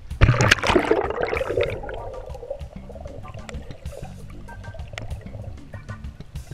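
A camera plunging into the sea: a sudden loud splash about a quarter second in, then a bubbling gurgle that fades over about two seconds. Background music with a beat plays throughout.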